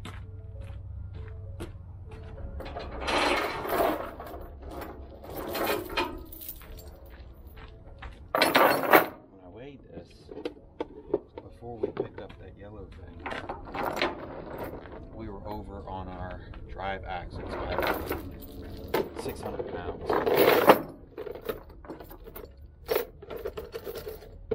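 Clicks, knocks and rattling of gear being handled on a flatbed trailer deck, with a loud clatter about nine seconds in.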